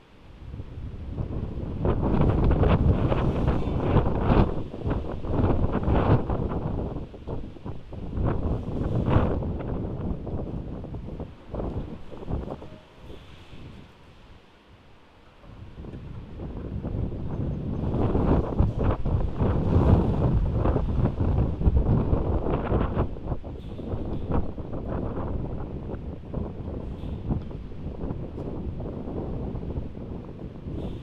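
Strong wind gusting and buffeting the microphone with a deep, rumbling noise. It rises within the first two seconds, drops away about halfway through, then swells again and slowly eases near the end.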